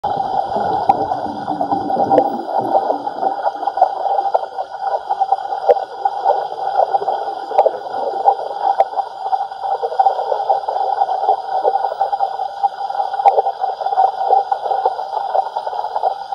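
Muffled underwater noise with constant crackling and occasional sharp ticks, picked up by a camera submerged in a swimming pool inside a waterproof dive housing. It likely includes bubbles from a scuba diver's regulator.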